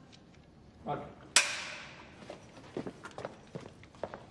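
A film clapperboard snapped shut once, a single sharp clap about a second and a half in that rings briefly in the room, marking the start of take two for picture-and-sound sync. A few small clicks follow.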